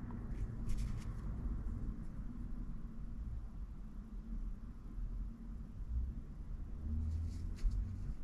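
Faint handling noise: fingers rubbing and pressing a soft plastic swimbait, with a few light ticks about a second in and near the end, over a steady low room hum.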